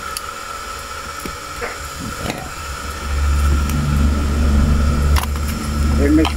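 Steady hiss with a faint constant whine, a few light clicks, and a loud low hum that comes in about halfway through and holds steady.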